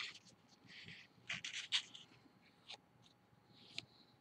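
Faint crinkling and scraping of a paper dollar bill being folded and creased by hand, in short scattered rustles, most of them bunched about a second and a half in.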